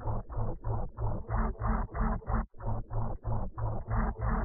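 Heavily effects-processed, muffled audio stuttering in rapid pulses, about five a second, with brief dropouts at the start and about halfway.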